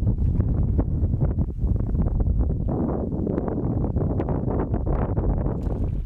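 Wind buffeting the microphone, with many short splashes from a hooked pike thrashing at the water's surface; near the end the fish splashes as it is scooped into a landing net.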